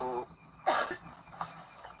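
A person coughing once, sharply, about two-thirds of a second in, just after a short spoken syllable.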